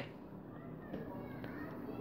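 Faint distant voices, like children at play, over low room noise.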